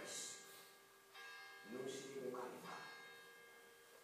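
A man speaking Italian into a microphone in short phrases with a pause between them, over a steady ringing tone in the background.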